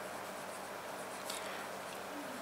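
Pen writing on paper: faint scratching strokes as a word is written out.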